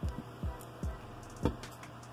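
Hard plastic action-figure parts being handled, four light clicks and knocks as a translucent plastic crystal piece is picked up and fitted onto the figure's arm.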